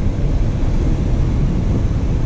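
Car driving on a gravel road, heard from inside the cabin: a steady low rumble of tyres and engine.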